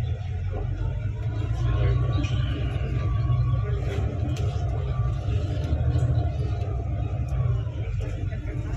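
Low steady rumble of a bus on the move, heard from inside, growing louder a second or two in, with a faint thin whine that rises and then holds through the middle.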